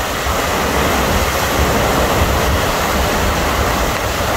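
Fast, silt-laden glacial river rushing over its bed in a steady, loud rush.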